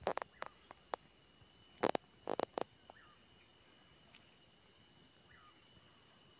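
Steady high-pitched chorus of crickets and other insects on the forest floor, with a handful of sharp clicks and crackles in the first three seconds.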